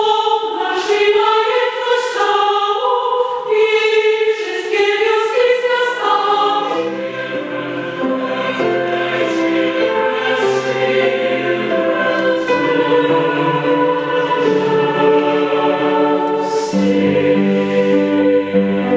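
Youth choir singing a slow passage of long held chords. Higher voices sing alone at first; lower voices join about six seconds in, and the low parts grow louder near the end.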